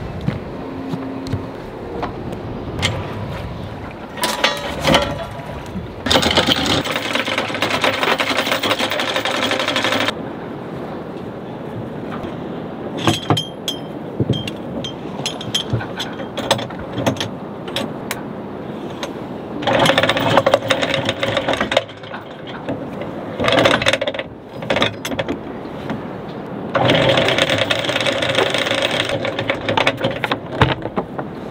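An electric anchor windlass running in three bursts of several seconds each as the anchor is let down, with the chain rattling and clanking over the bow roller between them.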